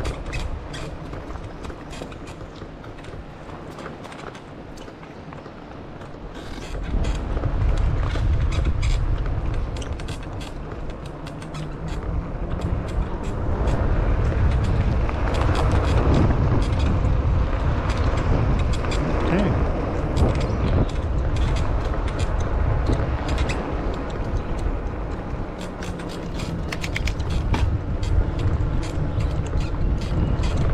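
Wind buffeting the action camera's microphone as an e-bike rides along a park path. It swells about seven seconds in and again from about thirteen seconds as the bike picks up speed. Frequent small clicks and rattles come from the bike over the surface.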